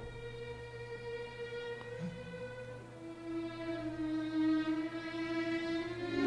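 Quiet orchestral music with violins holding long sustained notes; the held pitch moves lower about halfway through.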